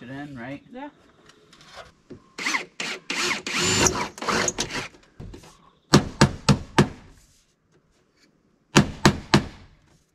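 Hammer tapping on a metal gutter at the roof edge. There is a quick run of about six sharp blows past the middle, then, after a short pause, a run of about four more near the end.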